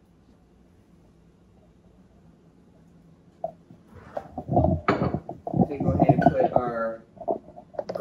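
Quiet room tone for the first few seconds, then a short click and a person speaking from about four seconds in.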